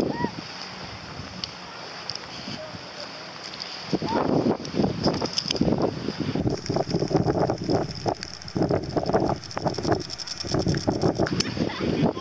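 Wind buffeting the microphone, much stronger from about four seconds in, over distant children's voices.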